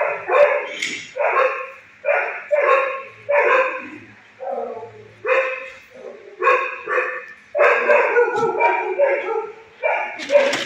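Dogs in a shelter kennel barking repeatedly, about a dozen short barks in quick succession.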